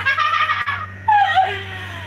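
A dog howling in two drawn-out calls, the second starting about a second in and falling in pitch.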